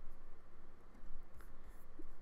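Pause between speech: faint room tone with a steady low hum, and one faint click about one and a half seconds in.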